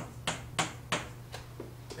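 Chalk tapping on a chalkboard as characters and a row of small marks are written: a run of sharp taps, about three a second.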